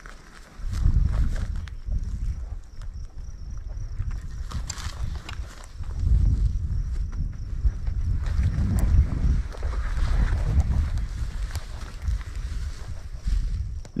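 Wind buffeting the microphone: a low, unpitched rumble that rises and falls in gusts.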